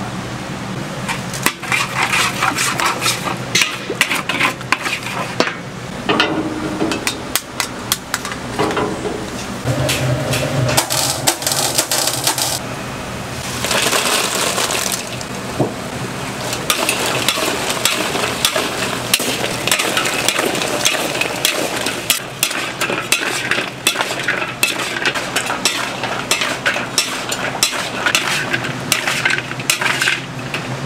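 Metal spatula and turner scraping and clattering irregularly against a large steel wok as fried chicken is tossed through a bubbling chili sauce for dakgangjeong, with the sauce sizzling underneath.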